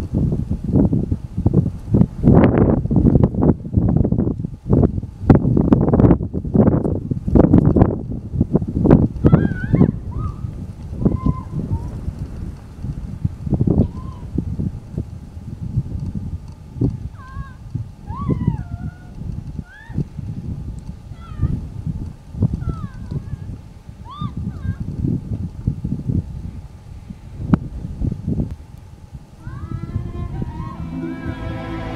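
Footsteps and rustling through dry grass and brush, hurried and dense for the first several seconds, then sparser. Short chirping bird calls come in over it from about a third of the way in.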